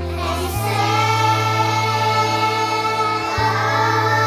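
A group of young children singing together as a choir over an instrumental backing track with sustained bass notes; the bass changes note about half a second in.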